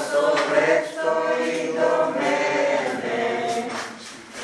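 A group of voices singing a worship hymn or chant together, the singing easing off near the end.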